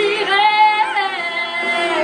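A woman singing in French, her voice sliding in pitch over the first second, then holding a steady note.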